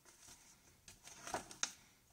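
Quiet handling of the glossy paper sticker sheets of a children's activity book as a page is turned, with a few short crisp paper rustles in the second half.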